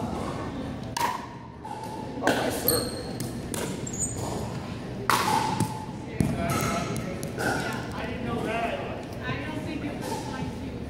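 Pickleball rally: several sharp pocks of paddles hitting the plastic ball, roughly a second apart, echoing in a large gym hall.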